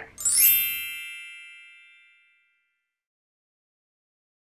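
A single bright chime sound effect rings out just after the start and fades away over about two seconds.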